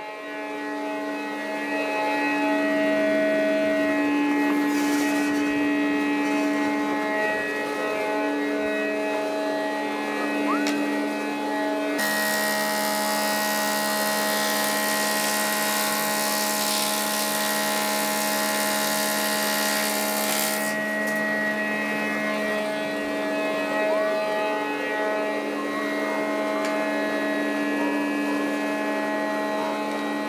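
Woodworking planer-thicknesser and dust extractor running steadily with a constant motor hum. About twelve seconds in, a board is fed through the cutter block, and a loud hiss of cutting lasts about nine seconds before it drops back to the steady run.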